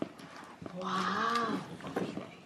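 A single drawn-out vocal sound lasting about a second, rising and then falling in pitch, with a few faint taps of hands on a cardboard toy box.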